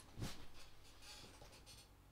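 A soft thump about a quarter second in, then faint scratchy rustling, as a person moves and shifts close to the microphone.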